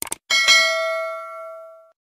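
Notification-bell sound effect: two short clicks, then a bright bell ding struck twice that rings out and fades over about a second and a half.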